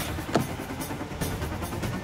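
Background score music over a car engine running. A short sharp sound with falling pitch comes about a third of a second in.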